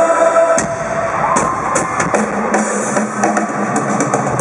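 Loud amplified live band music with a drum kit playing, no singing, heard in a large arena.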